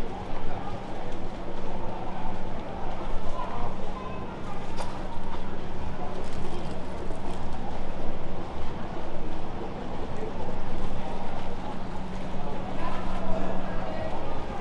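Busy pedestrian street ambience: indistinct chatter of passers-by mixed with general bustle, with a steady low hum underneath.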